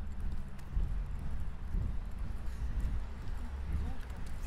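Ambience of a large indoor concourse: a steady low hum with footsteps on a hard floor and faint voices of passers-by.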